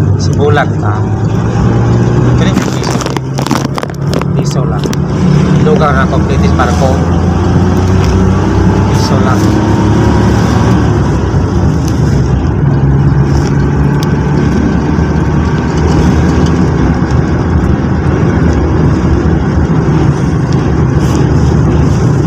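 Engine and road noise of a moving passenger jeepney heard from inside the crowded cabin: a steady low drone that shifts in pitch a few times as it changes speed.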